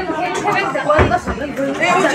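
Several people talking and chattering over one another, with a single sharp knock about a second in.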